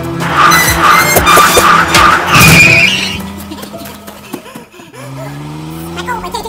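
Cartoon sound effects of a speeding vehicle, with a brief tyre screech about two and a half seconds in, over background music. It falls back to quieter music after about three seconds.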